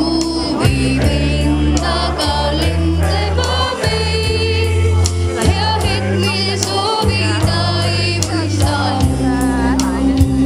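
A choir singing a song through a PA with amplified accompaniment: heavy bass and a steady beat under the voices.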